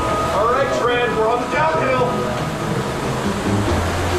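Concept2 air-resistance rowing machine in use at about 33 strokes a minute, its fan flywheel whooshing with each drive. A person's voice is heard over it.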